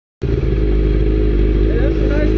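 Sport motorcycle engine running steadily at low revs, heard close up from the rider's seat.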